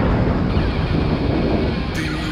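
Loud, dense rumbling noise with no clear notes, part of a punk rock band's recording; it fades slightly toward the end.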